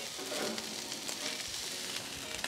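Fried rice sizzling steadily on a hot flat-top griddle, with a metal spatula stirring and scraping through it.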